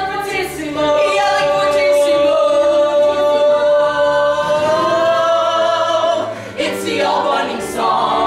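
Several voices singing together, holding one long sustained chord for about six seconds, then moving into quicker sung notes near the end.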